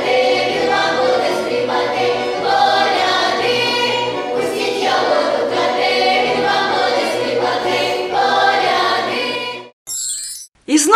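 A folk choir of mainly young female voices singing a Christmas carol (koliadka) together. The singing cuts off abruptly near the end.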